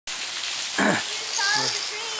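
Steady rushing hiss of a waterfall below the bridge, with a short thump a little under a second in and a brief voice sound just after the middle.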